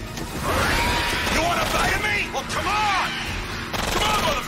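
Film action soundtrack: several short, rising-and-falling shrieks from the Reaper vampires, over a loud rush of splashing water and a music score.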